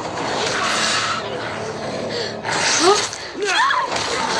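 Fight-scene audio from a TV episode: a dense rushing noise in the first second, then a few short cries rising and falling in pitch in the last second and a half.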